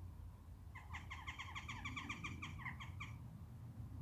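A bird's rapid call: a quick run of short, evenly repeated notes, about seven a second, starting about a second in and lasting a little over two seconds.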